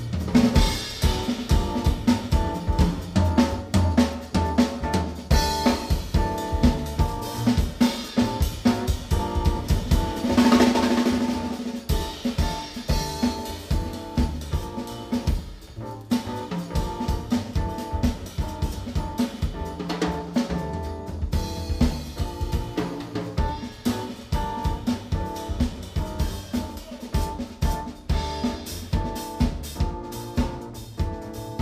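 Live jazz piano trio playing: a drum kit played busily and up front, with snare, bass drum and rimshots, under piano and double bass. The music swells louder about ten seconds in.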